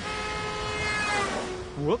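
Car horn sounding for about a second and a half over traffic noise, fading out with a slight drop in pitch.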